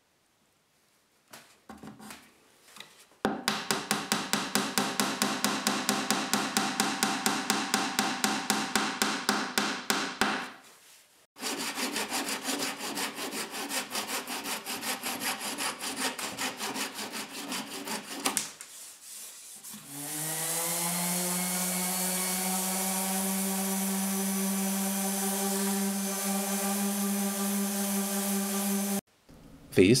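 Fine-toothed hand saw cutting wooden dowel pins flush with a chestnut panel, in two runs of rapid, even strokes of about four a second. About twenty seconds in, a small electric motor spins up with a short rising whine and then runs at a steady hum, cutting off near the end.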